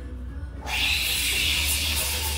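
Espresso machine steam wand switched on with a sudden, loud, steady hiss about half a second in.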